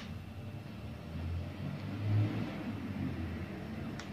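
A low rumble that swells to a peak about two seconds in and then eases off.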